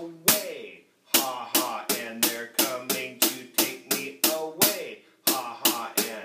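Drum kit playing a slow half-time shuffle groove, with hi-hat and cymbal strokes about three a second and ghost notes and accents on the snare. There is a short break just under a second in, and then the groove goes on.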